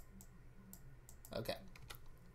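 A few faint, scattered clicks of a computer mouse and keyboard being worked, over a low steady hum.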